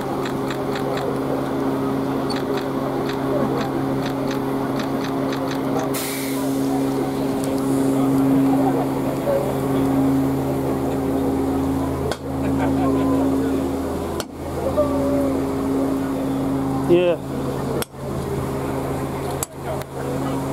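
A steady, low mechanical hum with people talking around it on a station platform beside a standing steam locomotive, with a short hiss about six seconds in.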